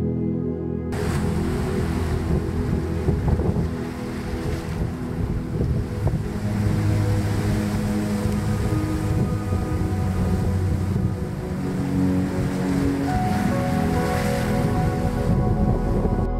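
Ocean surf surging into and draining from a rock sinkhole on a basalt shore, an even rushing roar of water, with soft ambient music underneath. The surf starts about a second in and cuts off just before the end.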